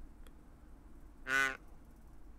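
A man's single short, hummed "un" of acknowledgement about a second and a half in, over quiet room tone.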